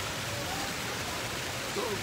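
Steady rush of water splashing from a pool fountain.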